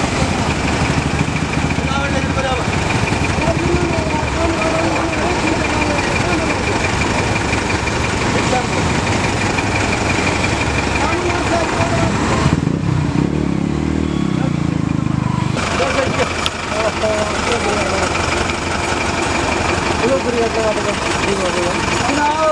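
A heavy vehicle's engine running steadily, with the voices of an onlooking crowd over it; about halfway through, for some three seconds, the engine's low note stands out alone.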